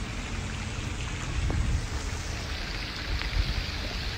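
Steady outdoor background noise picked up by a phone microphone: an even hiss with a low rumble beneath it.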